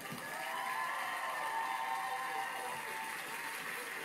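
Studio audience laughing and applauding.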